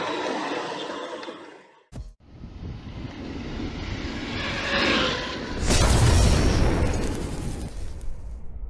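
Cinematic logo-intro sound effects: a swelling whoosh builds for a few seconds into a deep boom with a heavy low rumble about six seconds in, then dies away. Before it, a steady noise fades out in the first two seconds.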